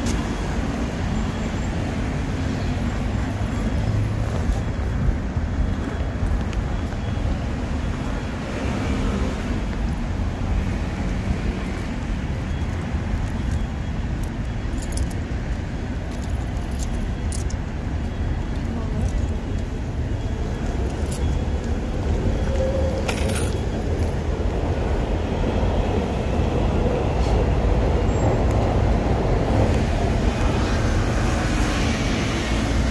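Steady city street traffic noise, with wind buffeting the microphone and a few faint clicks.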